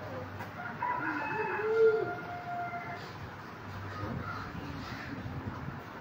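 A rooster crowing once, starting about a second in and lasting about two seconds, over a low steady hum.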